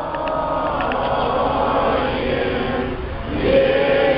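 A crowd of Orthodox worshippers and clergy singing a liturgical chant together, many voices in unison. A new, louder sung phrase starts about three seconds in.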